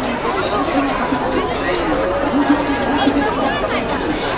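Crowd of pedestrians on foot, many people talking at once in overlapping chatter, with a nearer voice or two standing out now and then.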